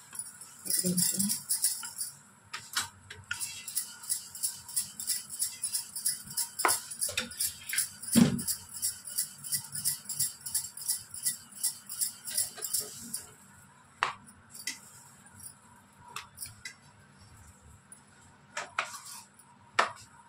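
Glass bangles on the wrist jingling in a quick rhythm, about three clinks a second, with each stroke of a wooden rolling pin rolling out roti dough on a stone counter. There is a single louder knock a little before halfway. After about two-thirds of the way the jingling thins out to a few scattered clicks.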